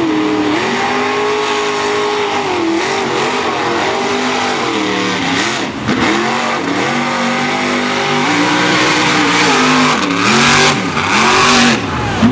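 A mud-bog vehicle's engine revs hard while churning through a mud pit, its pitch dropping and climbing again and again as the throttle is worked, over the rush of thrown mud and water. There is a brief break about halfway through, and the noise grows louder near the end.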